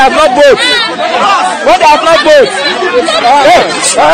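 Several people's voices talking loudly over one another, an excited crowd chatter.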